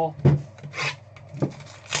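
Cardboard trading-card box being picked up and handled on a table: a thump about a quarter second in, hands and box rubbing and scraping, and another knock about a second and a half in.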